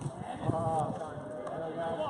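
A person's raised voice calling out for about a second, without clear words, with a few knocks and scuffs of play on the court.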